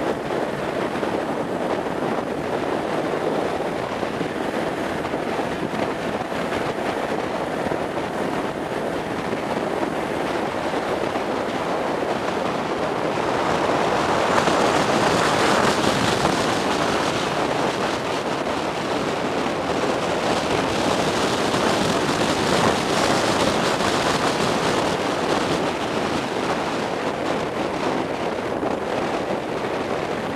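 Wind rushing over a helmet-camera microphone on a moving 1987 Suzuki GSX-R 750 motorcycle, with the bike's running and tyre noise beneath. The rush is steady and swells louder about halfway through.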